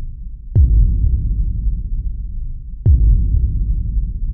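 Film soundtrack sound design: a steady low rumbling drone with two deep booming hits, about half a second in and again near three seconds, each dying away slowly.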